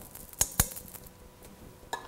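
Two sharp clinks of a small glass cup knocking against hard kitchenware, about a fifth of a second apart, then a single click near the end.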